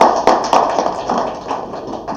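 Audience applauding: dense, irregular clapping that fades toward the end.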